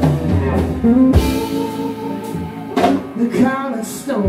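Live blues band playing a slow blues: electric guitar lead lines with bent notes over bass and a drum kit, with a few sharp drum hits.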